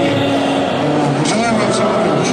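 Voices talking over the steady din of a large, crowded hall.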